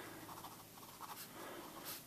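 Pen writing on paper, faint scratching strokes.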